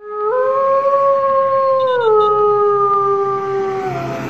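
A truck horn giving one long single-note blast. Its pitch steps up just after it starts, drops about two seconds in and then sags slowly as the air pressure falls.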